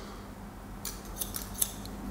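Barber's hairdressing scissors snipping hair held on a comb, scissor-over-comb cutting: a quick run of several short, crisp snips starting about a second in.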